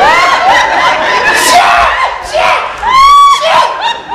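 Loud, high-pitched laughing and squealing voices, with one long shrill cry about three seconds in.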